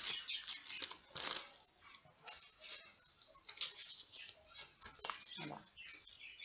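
Pet budgerigars chirping and chattering, mixed with the crinkle of a plastic packet being handled, busiest in the first second and a half.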